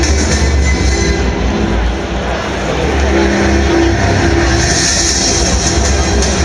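Loud intro music with heavy, steady bass and held chords, played over a stadium's public-address system.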